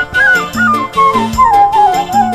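Live band music led by a flute playing a stepwise descending run of notes, over bass notes, keyboard and a steady drum beat.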